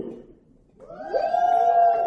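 A voice in the audience calls out one long note that rises and then holds steady, a call answering the speaker's summons to his brothers.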